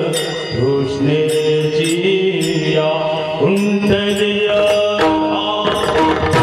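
Marathi devotional kirtan music: a sustained melody held on notes that move in steps, with percussion strikes keeping a steady beat about twice a second.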